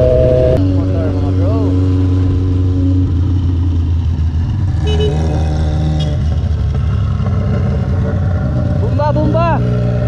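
Rusi Sigma 250 motorcycle engine running steadily at cruising speed, heard from the rider's own seat, with a slight shift in pitch under a second in.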